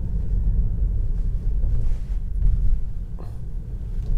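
Low, steady road rumble inside the cabin of a Tesla Model 3 rolling slowly along a village street. It is an electric car, so no engine is heard, only the tyres and road noise.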